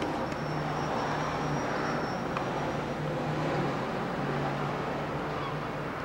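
Steady outdoor background noise like distant road traffic, with a low hum and a faint thin high whine that stops about halfway through.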